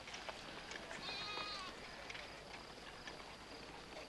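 A single wavering bleat from livestock, about a second in and lasting under a second, faint over light background noise.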